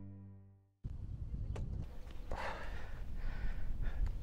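Acoustic guitar background music fades out, a moment of silence follows, then about a second in faint outdoor ambience with a low rumbling noise haze takes over.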